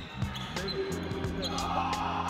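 A basketball being dribbled on an indoor court floor, with repeated bounces, over background music.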